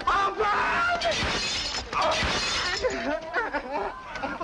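Window glass shattering, the breaking and tinkling running for a second or two in the middle, with raised voices over it.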